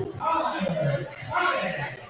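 Indistinct talking from people in a large gymnasium.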